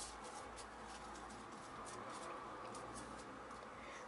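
Faint rustling and scratching of origami paper being folded and creased by hand.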